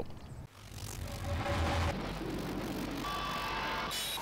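Electronic logo-sting sound effect: a noisy swell rising in about half a second in, with stuttering, buzzing tones toward the end.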